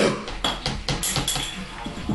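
Dishes and cutlery clinking on a table: a few light, sharp knocks, the clearest about a second in, under faint voices.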